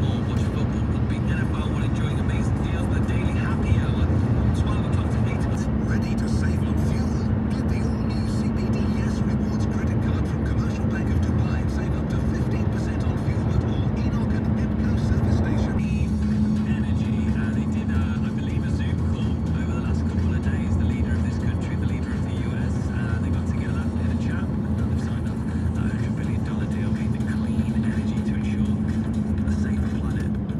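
Steady road and engine noise of a car being driven, heard from inside the cabin, with a change in the sound about halfway through.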